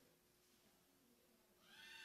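Near silence: room tone in a pause between spoken sentences.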